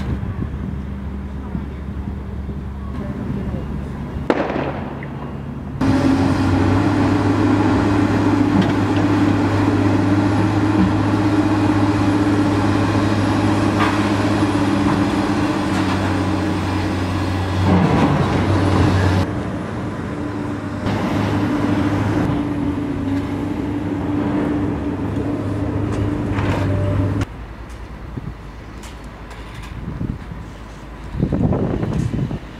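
Heavy machinery's engine running steadily with a low hum, louder from about six seconds in and dropping away a few seconds before the end.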